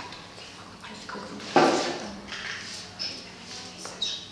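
Handling noise from a stuffed textile doll part being worked by hand: quiet rustles and small knocks, with one louder, short noise about a second and a half in.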